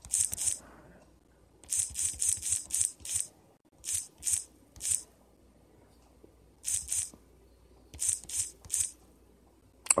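Typing on a computer keyboard: quick runs of keystroke clicks in several short bursts, with pauses between them.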